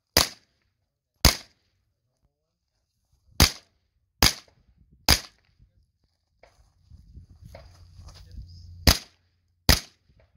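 Seven sharp shots from a pistol-caliber carbine. Two come about a second apart, then three in quick succession under a second apart, and after a pause of nearly four seconds a last pair.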